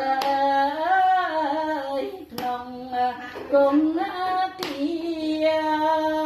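A woman singing a Khmer mahori song unaccompanied, in long held notes with a slightly wavering pitch. A sharp hand beat about every two seconds keeps time.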